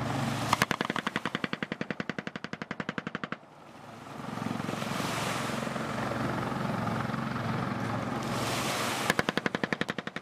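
Long burst of rapid automatic machine-gun fire, about a dozen shots a second, for about three seconds. A boat engine then runs steadily with wash noise, and a second burst of fire begins near the end.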